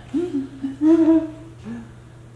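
A person humming three wordless notes, the middle one the longest and loudest.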